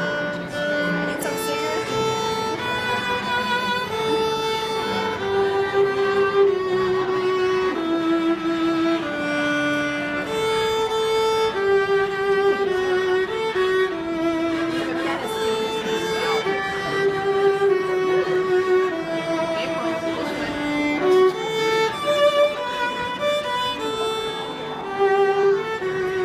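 Violin played solo in a slow melody of held notes with vibrato, each note lasting about half a second to a second.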